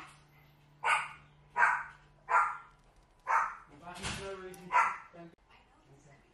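Pet dog barking repeatedly, about six short barks roughly a second apart, as a household member arrives home.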